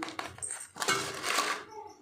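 Stainless steel bowls and a serving utensil clinking and scraping as rice and mashed potato are served. There are a few light clinks, then a brief metallic ring, then about a second of scraping.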